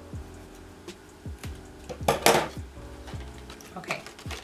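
Scissors cutting open plastic packaging: a sharp crinkling cut about two seconds in and a few lighter clicks, over background music with a steady beat.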